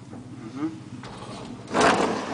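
Collapsible steel scissor gate of an old Flohrs traction elevator being pulled shut by hand, a short loud metallic rattle near the end, over a faint steady hum. Closing the gate restores its safety contact, which stopped the car between floors when the gate was opened.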